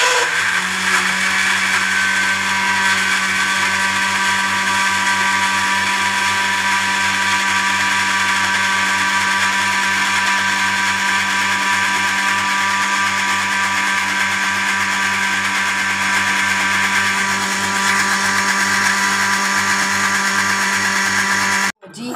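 Electric countertop blender running steadily, grinding wet chutney ingredients into a paste; it stops abruptly just before the end.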